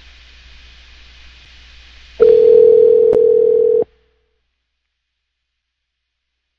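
Telephone line tone on a conference call dialing out to re-add a dropped caller: faint line hiss, then about two seconds in a single loud steady tone holds for about a second and a half and cuts off suddenly.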